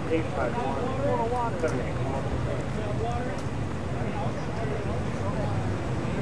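Indistinct voices of several people talking, clearest in the first couple of seconds, over a steady low rumble.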